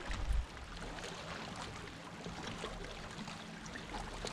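Small waves lapping and splashing against the hull of a drifting fishing boat, a steady wash of water sound, with a brief low rumble at the very start.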